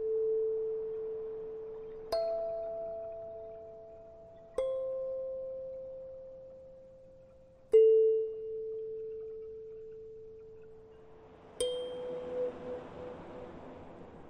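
Soft meditative background music of single struck, chime-like notes at changing pitches. A new note sounds about every two to four seconds, four times in all, and each one rings on and fades slowly.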